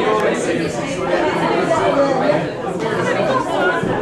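Several people talking over one another: indistinct chatter in a large room.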